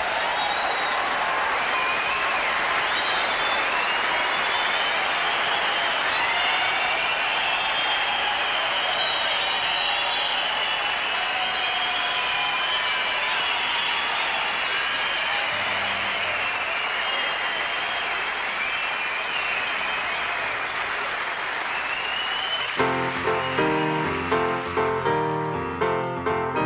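A large concert audience applauding steadily for a little over twenty seconds. Near the end the applause stops and jazz piano begins.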